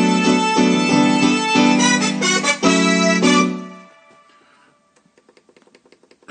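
Roland FA-06 keyboard playing a piano sound in a run of short chord stabs. The chords stop a little over three seconds in and ring away, leaving a few faint clicks.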